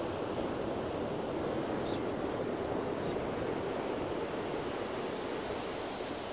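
Steady rush of ocean surf with wind, an even wash of noise that holds level throughout.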